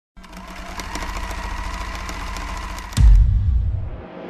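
Sound-effect intro to an electronic remix: a rapid mechanical clattering over a low hum and steady tones, then a sudden deep boom about three seconds in that fades away.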